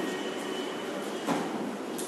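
Steady background noise of a room with a faint steady whine, and one brief soft knock a little after a second in.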